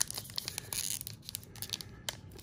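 Trading-card pack wrapper being peeled and torn open by hand: a papery tearing rustle with several short crackles in the second half.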